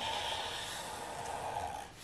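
Black felt-tip marker drawn across paper in one steady continuous stroke, stopping just before the end.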